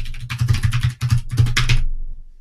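Fast typing on a computer keyboard: a rapid run of key clicks with a brief pause about halfway, stopping just before the end.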